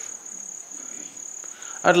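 Crickets trilling steadily in one continuous high-pitched note. A man's voice starts near the end.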